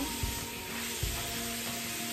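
Tap water running steadily into a bathroom sink as a facial cleansing sponge is rinsed under it, with a few soft knocks of handling.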